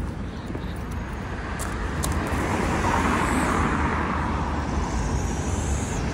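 City road traffic: cars and a van passing, a steady wash of engine and tyre noise that swells about halfway through, over a low rumble.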